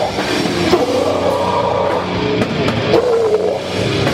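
Live hardcore metal band playing: distorted electric guitars and bass over a drum kit, loud and continuous.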